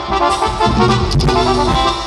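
Regional Mexican banda playing live: brass over drums, with a sousaphone on the bass line.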